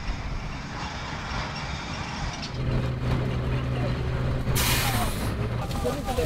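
Dump truck running on a rough landfill track: steady rumbling noise, with a low engine hum setting in about two and a half seconds in. A short, loud hiss of air comes about four and a half seconds in.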